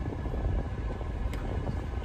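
Steady low rumble of a car, heard from inside its cabin while it moves.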